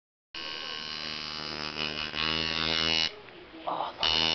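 Tattoo machine buzzing steadily as it needles ink into the skin, getting louder about two seconds in and stopping a second before the end, followed by a brief short sound.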